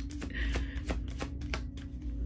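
A tarot deck shuffled by hand: a quick, uneven run of light card flicks and taps, several a second.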